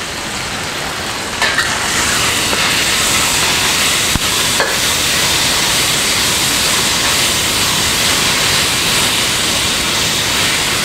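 Marinated chicken strips sizzling loudly in a very hot wok as they are stir-fried. The sizzle grows louder about a second and a half in, and the spatula clicks against the pan a few times.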